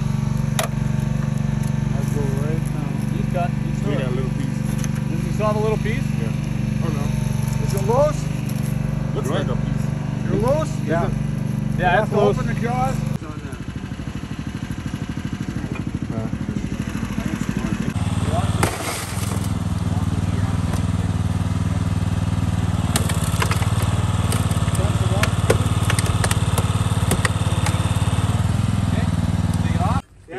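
A small engine running steadily, the power unit for hydraulic rescue tools, with creaks and squeals of car metal as a hydraulic cutter bites through a pillar. The engine sound drops abruptly about a third of the way in and changes again a few seconds later.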